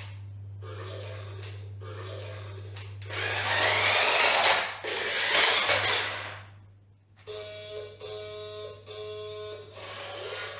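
Electric motor of a VTech Switch & Go Dinos remote-control triceratops toy whirring loudly for about three seconds, with a rising whine. After a brief pause the toy's speaker plays a short electronic tune of steady notes, broken into short phrases.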